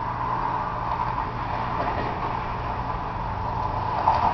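Steady background hum with an even hiss, unchanging throughout.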